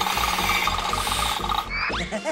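Cartoon sound effect of a woodpecker drilling rapidly into a tree trunk: a loud, fast, dense rattle that stops about 1.7 seconds in, followed by a quick rising whistle.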